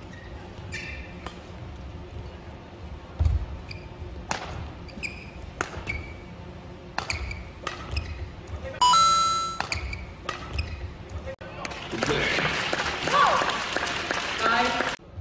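Badminton rally in a large hall: repeated sharp racket strikes on the shuttlecock, with court shoes squeaking on the mat, one longer squeak about nine seconds in. About twelve seconds in, the rally ends and a crowd cheers and claps.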